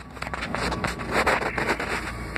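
Close-up handling noise: rustling and scraping with many scattered clicks as a hand-held camera is moved about.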